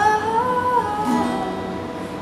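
A woman singing a slow worship song to her own strummed acoustic guitar: a held note slides up into place at the start, then she moves to a lower note about a second in.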